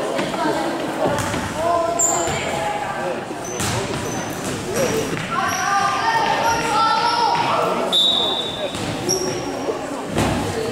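Youth futsal match on a wooden sports-hall floor: the ball being kicked and bouncing, several short high squeaks, and players and spectators calling out, all echoing in the large hall.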